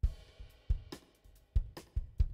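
A live rock band starts a song abruptly: a drum kit plays kick drum, snare and cymbal hits in an uneven rhythm over a chord from electric guitars and bass that rings out and fades.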